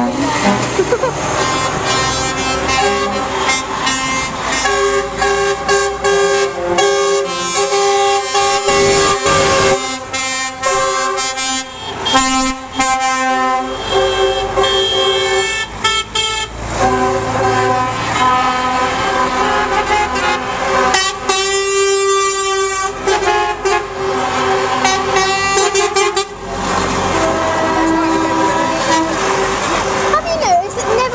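Lorries driving past one after another with their air horns sounding almost continuously, several horns of different pitches overlapping and changing, over the low running of diesel engines.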